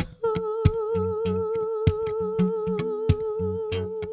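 A woman's voice holding one long wordless note with vibrato, over rhythmically strummed acoustic guitar with sharp percussive slaps and low bass notes.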